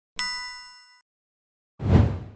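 Animated notification-bell sound effect: a bright bell ding about a fifth of a second in, ringing out for nearly a second. Near the end comes a low whoosh, about as loud as the ding, as the button bar collapses.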